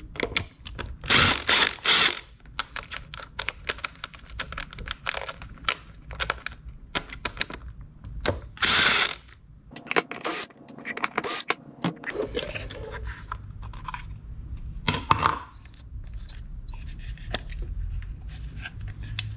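Cordless Ryobi drill-driver spinning out the screws of a distributor cap in short bursts, a close pair about a second in and a longer run about nine seconds in, with clicks and rattles of the metal parts and screws being handled in between.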